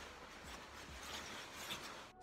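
Faint rustling of a hooded paint suit and light movement as the wearer turns and walks away, over low room hiss.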